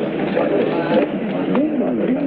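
Low cooing bird calls over a murmur of background voices, with scattered light knocks.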